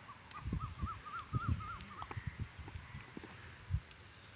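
An animal calling: a quick run of about ten short, high, rising-and-falling notes in the first half, with scattered low thumps, the loudest one near the end.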